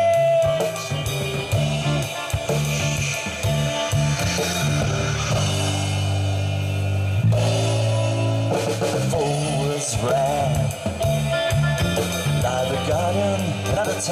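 A live rock band plays with electric bass, electric guitar and drum kit. A sung note held at the start fades out within the first second, and the band carries on without vocals.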